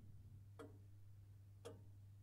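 Near silence with faint ticking about once a second, like a clock, over a low steady hum.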